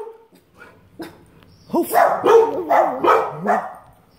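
Dogs barking behind a gate: a quick run of about five or six loud barks packed into two seconds, starting a little under two seconds in.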